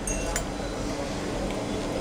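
A fork clinking lightly against a ceramic plate, two or three short clinks in the first half second, then a steady low room hum.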